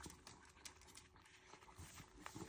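Faint, irregular wet clicks and smacks of a miniature dachshund licking soft ice cream from a cup.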